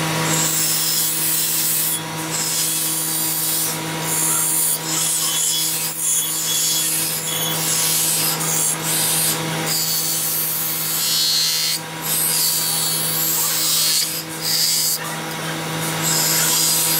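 A powered grinding wheel runs with a steady hum while a Damascus steel knife blade is pressed against it in repeated passes. Each pass is a high grinding hiss of steel on stone that breaks off briefly every second or few seconds as the blade is lifted and set back.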